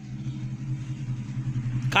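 A steady low hum, like a running engine, slowly growing a little louder.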